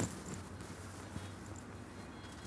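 Quiet open-air background noise with a low hum, and a single small click a little over a second in.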